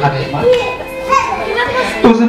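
Several people's voices at once, children's among them, talking and calling over one another.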